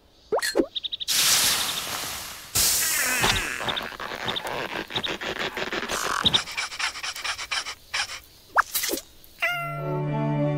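Cartoon sound effects and squeaky vocal noises from animated larvae: bursts of noise, clicks and short sliding squeals. A music cue comes in near the end.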